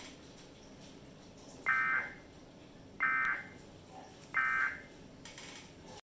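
Emergency Alert System end-of-message data tones: three short, buzzy, high-pitched bursts about a second and a half apart, marking the end of the alert.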